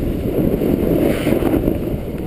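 Wind buffeting the microphone of a camera carried by a moving skier: a steady, fluctuating low rumble. Skis scrape faintly over the snow under it.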